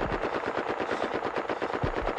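Machine gun firing one long continuous burst of rapid, evenly spaced shots, from a war film's soundtrack.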